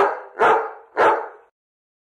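A dog barking three times in quick succession, about half a second apart, then stopping about a second and a half in.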